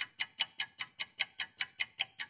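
Fast, even clock-style ticking, about five sharp ticks a second, with silence between the ticks.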